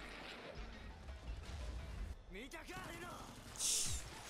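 Faint anime soundtrack: a low rumble underneath, a voice speaking briefly a little past halfway, then a short hiss near the end.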